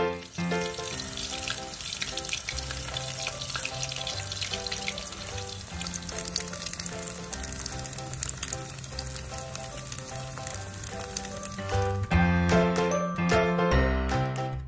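CDO Ulam Burger patties shallow-frying in oil in a pan: steady sizzling with dense crackle and spatter, over background music. The frying cuts off suddenly about twelve seconds in, leaving the music louder.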